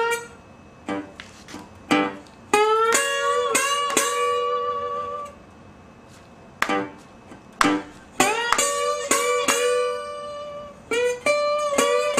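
Resonator guitar in open G tuning played with a slide: plucked notes glide up into the twelfth-fret position and ring for a couple of seconds. The lick is played twice, with short single plucked notes between.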